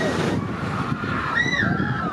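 Gerstlauer Infinity Coaster train running along its steel track, a steady rushing rumble that is loudest right at the start. A short high-pitched cry rises and falls about a second and a half in.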